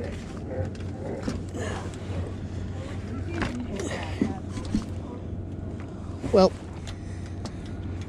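Steady low hum with light rustling and handling clicks, as a sleeve rubs against the microphone, under faint distant voices; a short spoken word comes about six seconds in.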